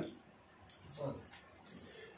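Near silence with low room tone, broken about a second in by one brief murmur from a man's voice.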